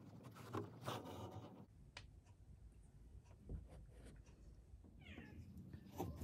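A near-quiet room with a few soft taps and rustles as the needle, thread and fabric are handled. About five seconds in there is a faint, short, rising animal cry.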